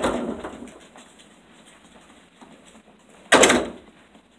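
Flannel cloth rubbing over a phone's microphone: a loud rustle at the start that fades over about a second, then a second short rustle a little after three seconds in.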